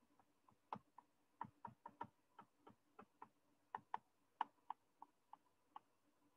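Faint, irregular clicks and taps of a stylus on a pen tablet while a line of text is handwritten, about sixteen short ticks with uneven gaps starting just under a second in.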